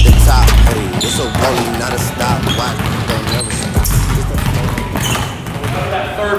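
Several basketballs dribbled on a hardwood gym floor, with repeated bounces and voices in the gym. Background music with a heavy bass plays at the start and cuts off under a second in.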